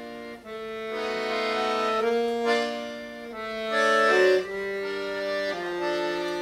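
Accordion playing held chords in a slow live piece, the chord changing every second or so and swelling louder twice in the middle.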